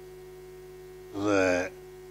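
Steady electrical hum on the recording during a pause in a man's speech, broken about a second in by one drawn-out spoken "dhe" ('and').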